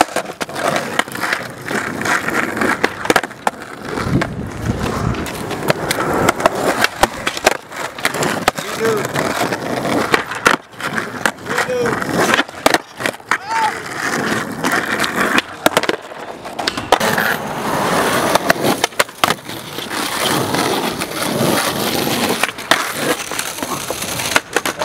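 Skateboard wheels rolling on rough asphalt, broken by repeated sharp clacks of the board: pops, landings, and the deck slapping the pavement.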